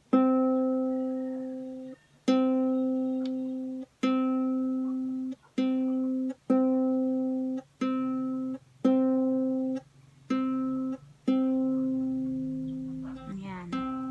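The open C string of a ukulele plucked over and over, about nine times a second or two apart, each note ringing and dying away, while the string is tuned to C against a clip-on tuner; the last note rings longest, and by the end the tuner reads in tune.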